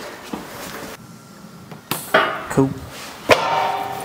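A metal rock slider clanks once against the truck's underside as it is being fitted, a sharp knock with a short metallic ring, after a lighter click a couple of seconds earlier.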